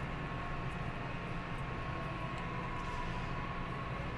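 Steady low mechanical hum of indoor store background noise, with a faint thin whine held over it.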